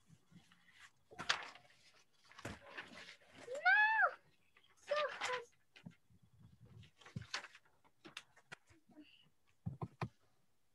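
Paper and a folder being handled in scattered bursts of rustling, with small knocks. About four seconds in there is a short high-pitched call that rises and then falls, and just after it a second brief pitched sound.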